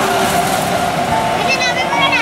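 Busy street noise: people's voices mixed with the steady sound of vehicles, with a high wavering call near the end.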